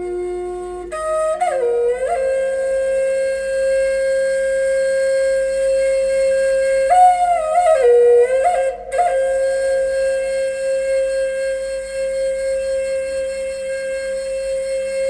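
Solo flute playing a slow melody of long held notes, with quick ornamented turns between them about a second and a half in and again a little past the middle.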